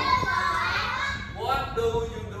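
Schoolchildren's voices talking in a classroom. There is a brief lull partway through, then a voice picks up again near the end.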